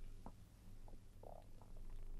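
Faint steady room hum with a few soft mouth clicks and a brief soft mouth sound about a second in, from a man pausing between phrases of speech.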